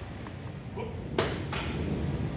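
A single sharp crack from a karate kata technique about a second in, just after a count of "one" is called.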